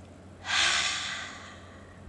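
A woman's deep exhale, a long breathy sigh that starts about half a second in, loudest at its start and fading away over about a second.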